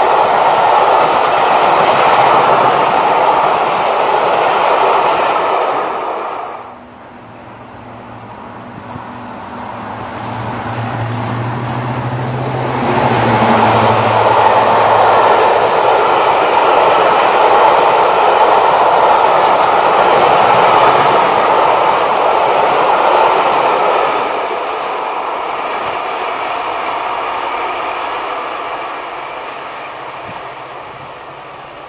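Diesel-hauled train of passenger coaches running through at speed, a steady rumble of wheels on the rails. About a third of the way in the sound cuts off. A diesel locomotive's low engine hum follows, then the coaches rumble loudly past again and the sound fades as the train draws away.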